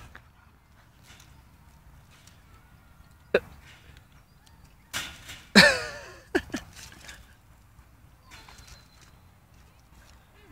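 A single short, loud animal call with a falling pitch about halfway through, preceded by a sharp click a couple of seconds earlier and followed by a few softer sounds; otherwise quiet.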